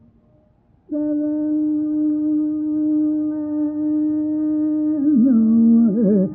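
Carnatic classical music in raga Shankarabharanam from an old, narrow-band 1959 radio recording. After a brief near-pause, one note is held steady for about four seconds, then breaks into quickly oscillating, ornamented phrases near the end.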